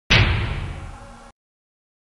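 An edited-in impact sound effect: a single bang that starts suddenly and dies away over about a second, followed by dead silence.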